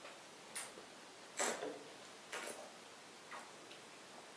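A few short, quiet sipping and slurping sounds as red wine is tasted from a glass, the loudest about a second and a half in, with light handling of the glass and a paper cup.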